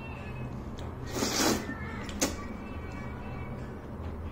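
A mouthful of hand-pulled laghman noodles being slurped off chopsticks: one loud slurp lasting about half a second, a little over a second in, then a short sharp click. Steady background music plays underneath.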